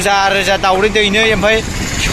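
A voice talking throughout, over a steady low engine hum from street traffic.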